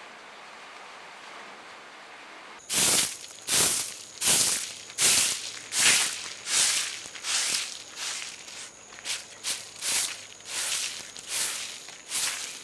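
Long-handled broom sweeping bare earth in a steady rhythm of rough, scratchy strokes, a little over one a second. The strokes start about two and a half seconds in, after a quiet stretch, and grow quicker and lighter toward the end.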